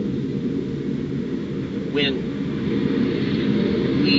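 A steady low rumble of background engine-like noise, with a short high wavering chirp about halfway through.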